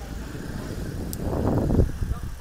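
Rumble and wind noise of a moving vehicle, getting louder about a second in.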